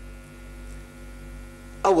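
Steady electrical mains hum from the microphone and broadcast audio chain, heard plainly in a pause between sentences. A man's voice starts again near the end.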